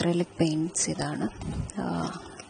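A person speaking, in short phrases with brief pauses.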